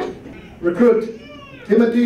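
A person's high voice making two short, drawn-out vocal sounds about a second apart.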